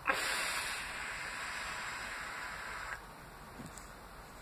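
A box mod vape with a 1.2-ohm 28-gauge coil in a rebuildable dripping atomizer being drawn on hard: a steady hiss of air and vapour pulled through the firing coil for about three seconds, then it stops.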